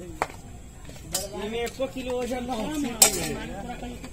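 Light knocks on a stainless steel plate as dough balls are set down on it: three sharp taps, near the start, about a second in, and a louder one about three seconds in.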